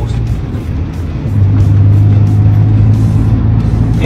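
Manual car's engine heard from inside the cabin, pulling uphill in third gear at about 2000 rpm just after an upshift. Its steady low drone grows louder about a second in.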